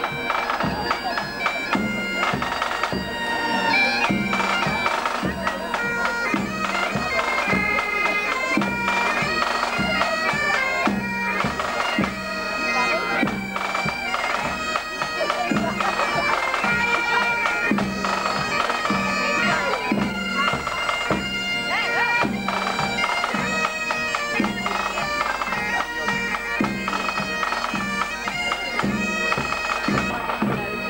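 Bagpipes playing a tune over a steady drone.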